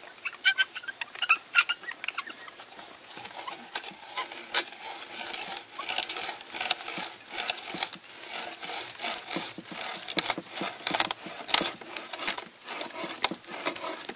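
Carpenter's hand brace turning a 32 mm auger bit into a wooden board: irregular crackling clicks and scraping as the bit's screw point and cutters bite into the wood, going on throughout.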